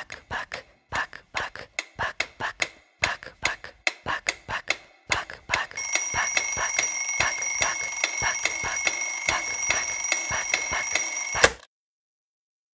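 Dry ticking clicks, about three or four a second, then about halfway through a bell alarm clock starts ringing loudly and continuously, and it cuts off suddenly just before the end.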